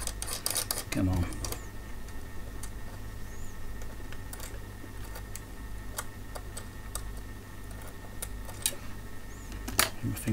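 Small metal clicks and taps as a binding post, its locking washer and nut are worked by hand into the instrument's metal front panel, a tight, fiddly fit. The clicks cluster at the start and then come irregularly about once a second, with a louder one near the end, over a steady low hum and a brief voiced grunt about a second in.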